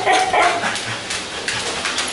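A husky giving short, excited whining yips, mostly in the first half-second, with a few light clicks after.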